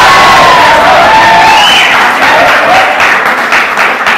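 Audience applauding and cheering, a dense wash of clapping with shouting voices rising over it; it eases a little near the end.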